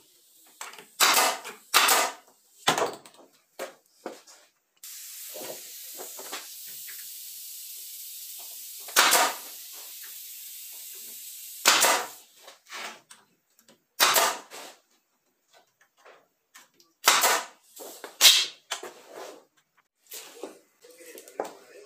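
Compressed-air blow gun hissing steadily for about seven seconds, starting about five seconds in, among a series of short, loud bursts of sound scattered through the rest.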